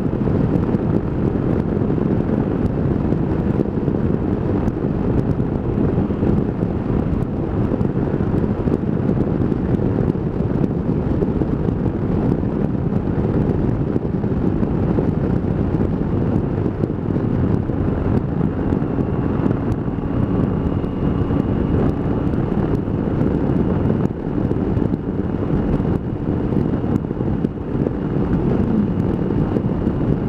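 Wind rushing over a helmet-mounted microphone on a Triumph motorcycle cruising steadily at about 60 mph, with engine and tyre noise underneath. A faint high whine joins a little past halfway.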